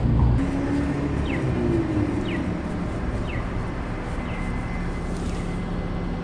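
Downtown street traffic: vehicles running by with a steady low engine hum. A few short high chirps come about a second apart in the first part.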